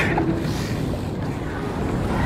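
Steady wind rumble on the microphone over open seawater, with one short sharp knock right at the start.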